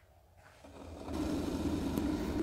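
Sunbeam glass electric kettle heating water: a steady rumble and hiss that swells in about half a second in and holds level from about a second.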